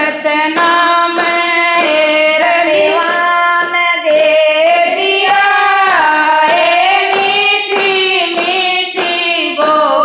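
Women singing a Haryanvi devotional bhajan together, clapping their hands in a steady beat to keep time.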